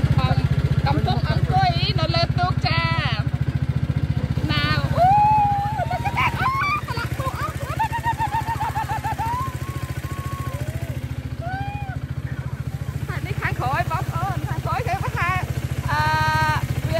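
Small motorboat engine running steadily with an even low pulse, with people's voices over it.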